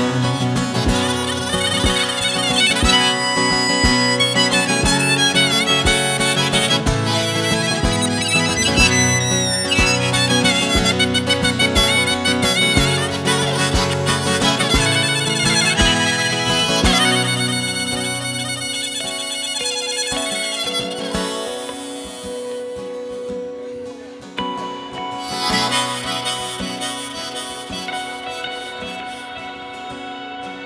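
Live folk-rock instrumental break: acoustic guitar and electric guitar under a lead melody with bending, wavering notes. About seventeen seconds in the low strumming drops out and the playing thins and quiets, then swells again near the end.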